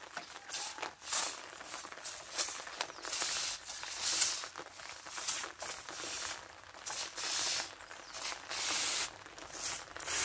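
A backpack pressure sprayer's wand nozzle hissing in a series of short, high-pitched spurts of varying length, misting liquid fertilizer onto young corn plants.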